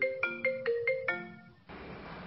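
Smartphone ringtone for an incoming call: a quick marimba-like melody of short notes, about four or five a second, that stops about a second in, its last note ringing out. Near the end it gives way to a steady low hiss of room ambience.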